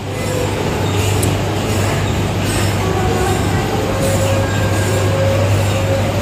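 A steady low hum under a continuous rumbling noise, like machinery running in an echoing hall.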